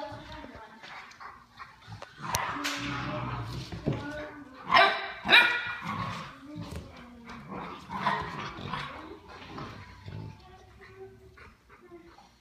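A puppy and an older dog playing, with scattered barks and yips. The loudest is a pair of sharp high barks about five seconds in.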